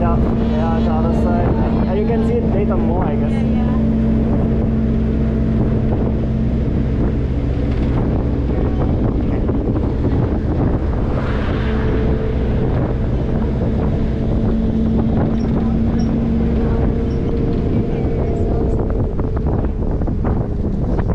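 A vehicle engine hums steadily with wind rushing in, heard from inside an open-windowed vehicle driving along a road. Voices are heard in the first few seconds.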